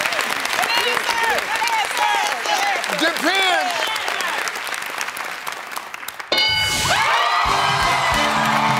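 Studio audience applause with excited shouts and whoops, fading over about six seconds. Then a bright game-show chime and upbeat music start suddenly: the answer revealed on the board, the stealing family winning.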